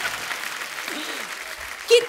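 Studio audience applauding, the clapping gradually dying away, with faint voices under it.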